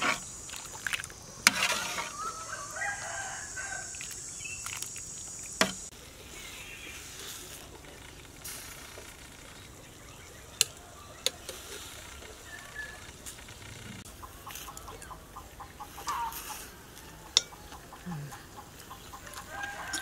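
A rooster crowing about two seconds in, with hens clucking now and then, under a steady high buzz that cuts off abruptly near six seconds. A few sharp metallic clinks of a ladle against a pot come through at intervals.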